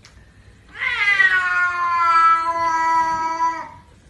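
A domestic cat gives one long, drawn-out yowl of about three seconds, starting about a second in. Its pitch drops at the onset and then holds steady. It is a threat yowl made while squaring off against another cat.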